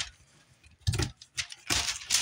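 A kitchen knife slicing down through pineapple rind, giving a crisp, crunchy rasp. There are a couple of short crunches about a second in, then a longer one near the end as a strip of skin comes away.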